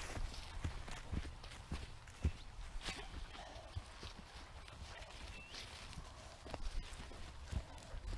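Footsteps of a person and dogs walking a narrow path through wet long grass and bracken, heard as irregular soft steps, knocks and rustling, quiet overall.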